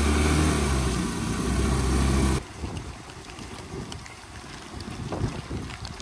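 Motor scooter engine running as it drives through floodwater on the road, with water splashing from the wheel. The engine sound cuts off abruptly a little over two seconds in, leaving a quieter wash of water noise with small ticks.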